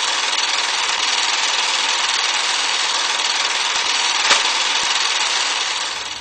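Film projector sound effect: a steady, thin mechanical clatter and hiss that fades out at the end.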